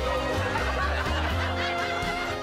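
Background comedy music with a laugh track of chuckling and snickering over it.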